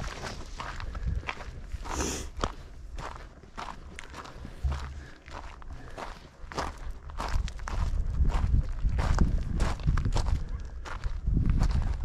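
Footsteps of a hiker walking on a dirt and gravel desert trail, at an irregular walking pace of about one to two steps a second.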